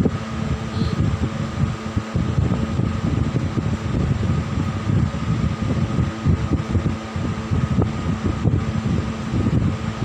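Wind noise from an electric fan's draft buffeting the phone microphone: a steady low rumble that flutters constantly, with a faint fan hum underneath.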